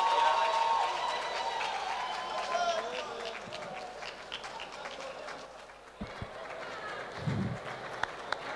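A male choir's last held note fades out in the first second or so as the audience claps and calls out; the applause and crowd voices then die down steadily. A short low thump comes about seven seconds in.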